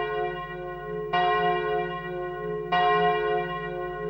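A large church bell tolling slowly, struck about every one and a half seconds. Each stroke rings on with many tones and fades slowly before the next.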